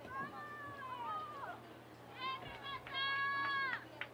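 Women's voices calling out across an outdoor soccer field: several short high-pitched shouts that rise and fall in pitch, then one long held call near the end.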